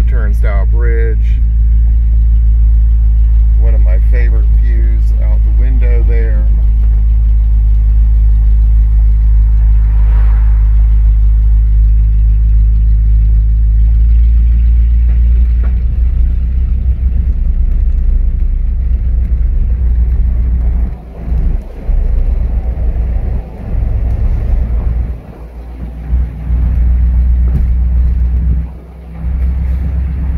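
Inside a 1960 Cadillac Eldorado Seville on the move: a steady low rumble of engine and road, with voices briefly in the first few seconds. In the last ten seconds the rumble drops away for moments several times.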